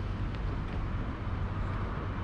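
Steady outdoor background noise with a low rumble, like distant road traffic.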